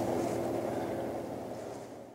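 Room tone: a steady background hiss with a faint hum, fading down toward the end.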